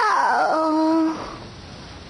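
A drawn-out whining vocal cry, about a second long: it falls steeply in pitch, then holds steady before stopping.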